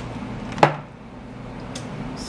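A stainless-steel wristwatch going into a plastic bowl of water, making one short, sharp knock about half a second in, over a steady low hum.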